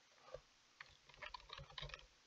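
Faint computer keyboard typing: a short run of separate key presses, a few at first and a quicker cluster in the second half, typing a single word.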